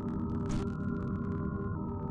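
Ambient synthesizer drone: a steady low hum under sustained held tones, the upper tones stepping to a new pitch near the end.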